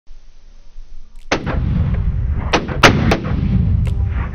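A single 7mm Remington Magnum rifle shot about a second and a quarter in, its report rolling on as a long low rumble, with several sharp clicks following in the next two seconds.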